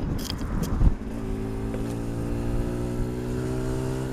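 Road and wind noise with a single thump just under a second in, then a vehicle engine holding a steady, even pitch.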